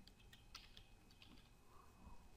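A quick run of faint keystrokes on a computer keyboard as a password is typed in, about eight keys in two seconds.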